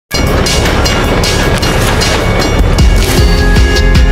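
A train rushing past a level crossing, a loud dense rush, mixed with electronic music; after about two and a half seconds the train noise gives way to the music's beat and steady notes.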